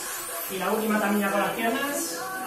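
A singing voice in workout background music, holding one long even note through the middle.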